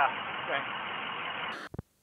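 A man's brief spoken replies over steady street noise with a vehicle engine idling, in a muffled, low-fidelity recording. The sound cuts off abruptly about one and a half seconds in, followed by a couple of faint clicks.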